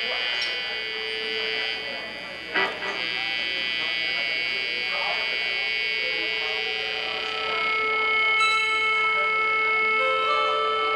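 A live band's amplified instruments holding several sustained electronic tones. There is a single sharp knock about two and a half seconds in, and new higher notes come in near the end.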